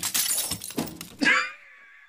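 Tail of a crash sound effect: things breaking and clattering, dying away by about a second and a half in, with a short sliding tone near the end.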